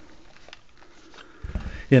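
A pistol is pulled from a stiff leather holster with faint rubbing and small clicks, then a few low knocks about one and a half seconds in as the holster and gun are set down on a cloth-covered table.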